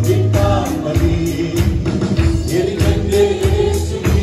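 Male vocalists singing a Malayalam Christian devotional song into microphones, backed by a live band of drum kit and keyboard with a steady beat.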